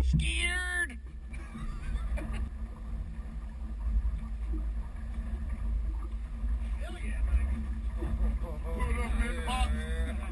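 Wind buffeting the camera microphone on an open fishing boat, a steady, uneven low rumble, with men's voices in the first second and again near the end.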